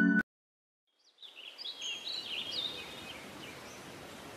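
A piano piece cuts off abruptly, and after about a second of silence birds start chirping over a soft outdoor ambience, with many short quick calls.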